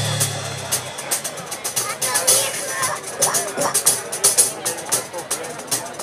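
Live band music: a held electric bass note fades out in the first second, then a sparse stretch of quick, sharp percussion clicks, about two or three a second, with voices wavering over it.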